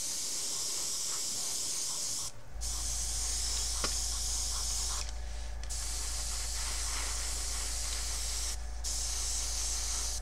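Airbrush spraying olive drab paint in bursts, a steady hiss cut by three brief pauses on the trigger. A low steady hum starts about two and a half seconds in.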